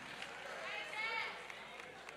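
A faint voice calling out briefly from the congregation in a large hall, about half a second in, over quiet room tone.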